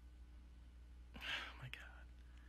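A quiet low hum, with one brief, faint, breathy sound a little over a second in.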